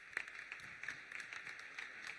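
Faint applause from a seated audience: light, scattered hand claps.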